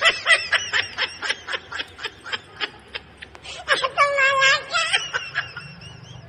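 A person laughing in a fast run of giggles for about three seconds, then a higher, drawn-out squeal of about a second.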